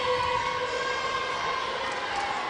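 A steady held tone with overtones, not changing in pitch, over the general murmur of an indoor basketball arena during a free throw.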